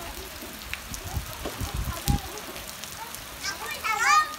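Steady rain falling on a swimming pool and its wet paved deck, an even hiss, with a few low thumps on the microphone. Near the end a child's high voice calls out.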